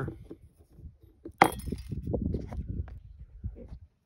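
Handling of a metal shop-vac motor bearing bracket, with one sharp metallic clink about a second and a half in as it is set down on the plastic motor housing, then softer knocks and rubbing.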